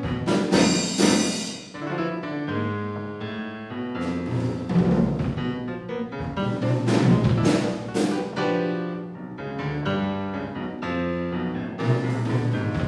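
Sonor drum kit played with piano accompaniment: drum strokes and cymbal crashes over changing piano chords, the loudest crashes about a second in and again around seven to eight seconds in.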